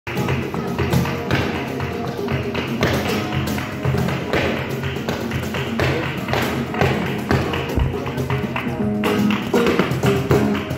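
Live flamenco: acoustic guitar and a cajón, with a dancer's footwork rapping sharply on a portable wooden board several times a second.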